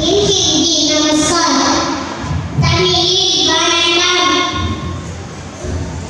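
A young girl singing into a microphone, one voice holding drawn-out notes, with a short break between lines about two and a half seconds in.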